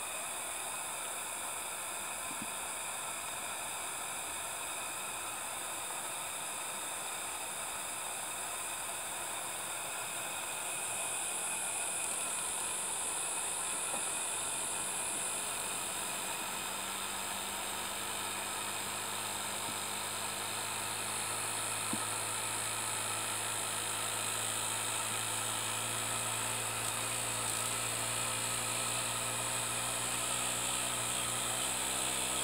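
Hand-built miniature single-cylinder steam engine running fast on boiler steam: a steady whir over a hiss. As the engine warms up, its speed picks up, and a running hum comes through plainly in the second half.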